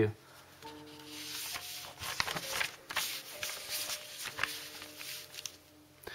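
Paper rustling and crinkling as the pages of a printed instruction booklet are handled and turned, with a few sharp clicks, over faint background music.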